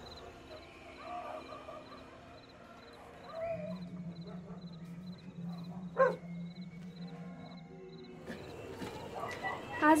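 Quiet night-time soundtrack ambience with a faint high chirp repeating evenly, about three times a second. A low steady hum runs through the middle, there is one sharp knock about six seconds in, and a voice comes in near the end.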